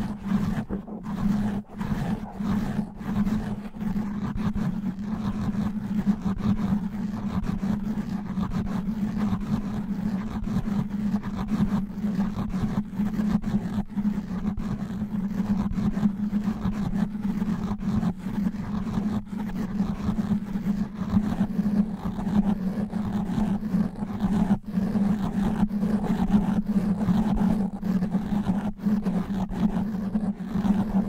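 Natural fingernails scratching fast and hard on a foam microphone windscreen: a dense, unbroken rough scratching with a strong deep rumble.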